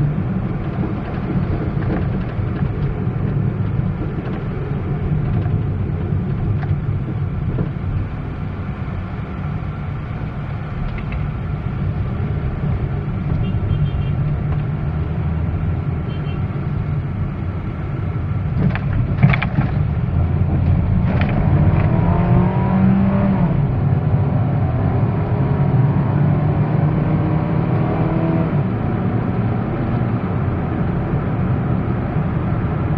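A car being driven, heard from inside the cabin: steady engine and road rumble throughout. There is a sharp knock about nineteen seconds in, and the engine pitch rises as the car speeds up in the second half.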